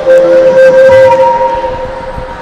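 A small hand-held wind instrument playing long held notes, one steady note sustained for over a second with a lower note sounding beside it for a moment.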